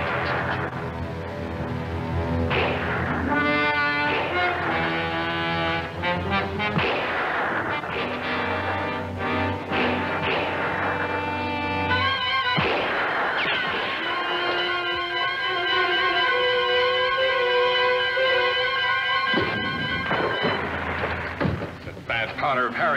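Dramatic orchestral film score with held brass and string chords, broken by a few sudden loud hits, one a couple of seconds in and another about halfway through.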